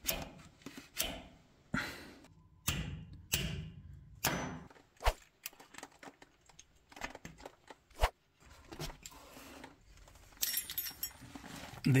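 Scattered sharp metal clicks and knocks as a spring-steel hitch pin clip is handled and pushed into the hole of a tractor three-point-hitch lower-link pin, with a short metallic rattle near the end.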